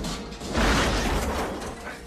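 Movie soundtrack of a prison bus crash: a heavy, rumbling crash with clattering metal as the bus tumbles and overturns. It swells to its loudest about half a second in and then eases off.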